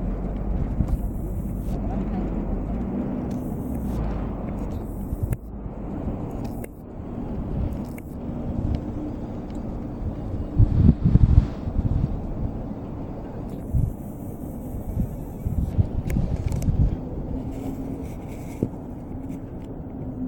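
Low, steady rumble of road traffic with indistinct voices, and a few dull bumps about halfway through.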